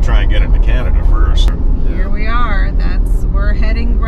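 Road and engine noise inside a moving vehicle's cabin, a steady low rumble, with a person talking over it.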